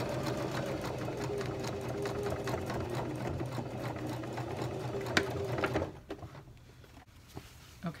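Elna sewing machine running steadily, stitching a pin tuck through denim, then stopping about six seconds in. A single sharp click comes shortly before it stops.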